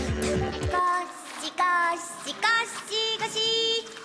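A busy music and sound-effect cue cuts off abruptly just under a second in. A high solo voice then sings slow, held notes with short breaks between them, an anime soundtrack vocal.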